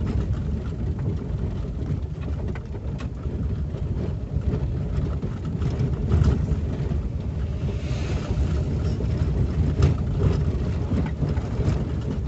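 Car driving over a cobblestone street, heard from inside the cabin: a steady low rumble of engine and tyres, with occasional small knocks and rattles.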